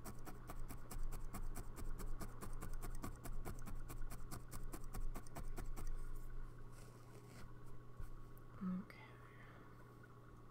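Felting needle stabbing rapidly and repeatedly into wool felt over a felting pad, several pokes a second, stopping about six seconds in. A short low tone sounds near the end.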